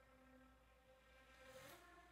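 Concert flute played very softly: a long held note, then a short breathy change about three-quarters of the way through to a lower held note.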